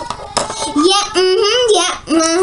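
A child singing a short wordless tune in held, wavering notes, after two light clicks at the start.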